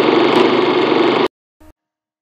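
A loud, steady buzzing drone from a documentary's opening sound, played back on a computer, cuts off suddenly about a second and a quarter in. A split-second snippet of sound follows as playback jumps ahead, then silence.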